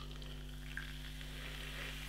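Beer poured in a thin stream from a glass bottle into a nearly full glass, with a faint, steady fizz of foam and carbonation.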